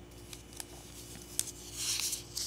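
Paper handled close to the microphone: small scattered clicks and one sharp tick, then a brief rustle near the end as a page is moved.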